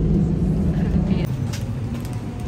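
Airliner cabin noise while the plane taxis after landing: a steady low engine and air-system hum with a droning tone that fades a little past halfway, and faint voices.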